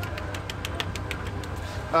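Steady low rumble of an engine idling in the background, with a few faint clicks in the first second.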